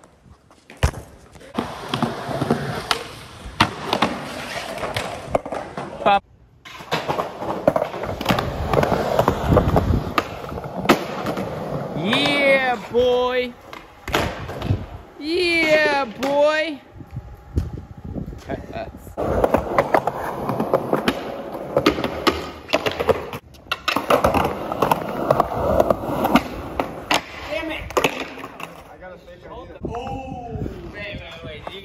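Skateboard wheels rolling over concrete, broken by sharp clacks and impacts from the board hitting and landing. Two brief shouts come around the middle.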